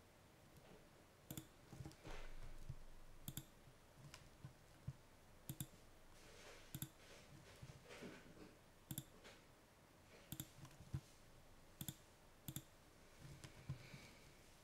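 Computer mouse buttons clicking, about ten short, sharp clicks at irregular intervals, as menus are opened and items selected.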